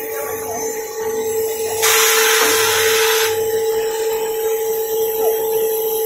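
Pulp-molding egg-tray forming machine running with a steady whine. About two seconds in, a loud hiss of air lasts a second and a half while the forming mould works in the pulp tank.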